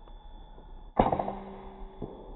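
A single PCP air rifle shot about a second in: a sharp crack, then a short ringing hum that dies away within about a second.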